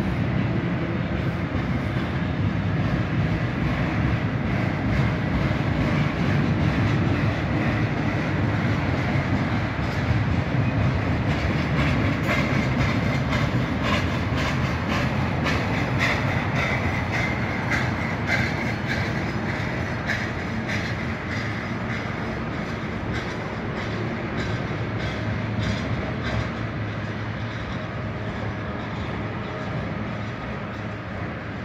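Double-stack intermodal well cars of a freight train rolling past close by: a steady rumble of steel wheels on rail with clickety-clack over the rail joints. The sound grows a little quieter toward the end as the last cars go by.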